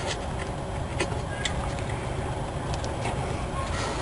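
A few faint, light clicks of metal as the rear brake caliper of a 1997 Toyota Camry is lowered over new pads and pressed into place, over a steady low background rumble.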